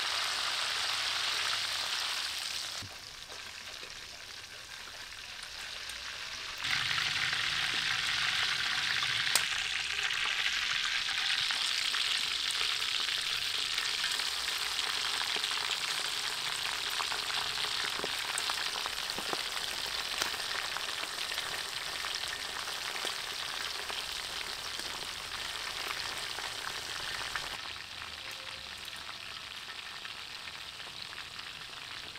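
Skewered whole shrimp deep-frying in hot oil in a wok: a steady sizzle with scattered sharp pops. It drops quieter a few seconds in, comes back loud about seven seconds in, and eases again near the end.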